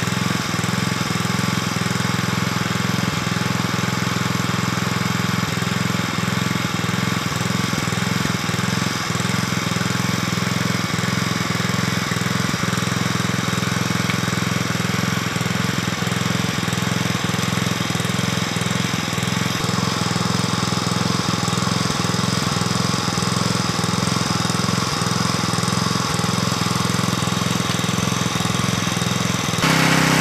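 A small engine running steadily at a constant speed without pause, the kind of power unit that drives the hydraulic pump of a conductor compression press.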